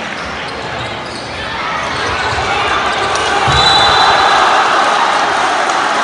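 Indoor basketball game: the ball thumps on the hardwood court amid spectators' and players' voices, which swell in the hall from about a second and a half in. A brief high whistle sounds just past the middle.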